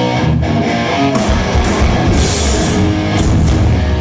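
Live heavy metal band playing mid-song: electric guitars through Marshall amplifier stacks, with bass and drums, loud and steady.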